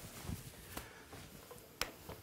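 Quiet room with a faint click about three-quarters of a second in, then one sharp click near the end: the power switch of a Lupolux Daylight 1200 HMI light being switched on.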